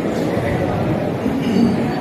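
An audience laughing and murmuring, mixed with voices.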